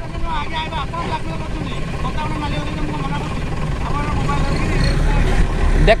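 Wind rumbling on the phone's microphone, growing louder toward the end, with faint voices talking at a distance.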